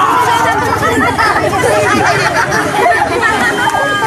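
Many voices shouting and crying out over one another in a loud jumble, with one long falling cry at the start.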